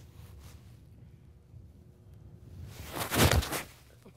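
A golf iron swung through the ball from fairway turf: a short, sharp strike and swish about three seconds in.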